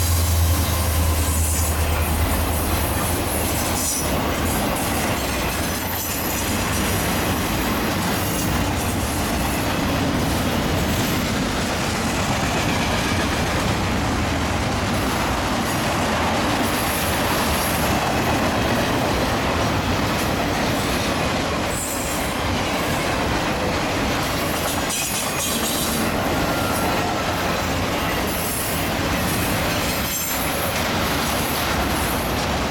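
A freight train passing close by: a deep diesel locomotive hum for the first few seconds, then the steady rolling noise of intermodal flatcars carrying highway trailers, with some wheel squeal.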